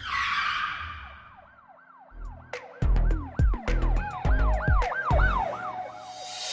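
Logo intro sound effect. A whooshing hit fades away, then a siren-like wailing tone rises and falls over and over, about two or three times a second. Heavy bass hits in a beat join it about two seconds in.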